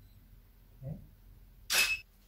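A single loud, sharp camera shutter release near the end, cut off abruptly; a short, soft low sound comes about a second earlier.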